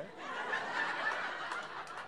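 Live audience laughing: a steady wash of laughter that swells about half a second in and eases off a little near the end.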